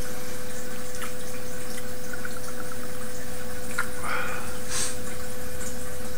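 A man quietly sipping and swallowing beer, with a faint wet mouth sound about four seconds in, over a steady hiss and a constant low hum from the microphone.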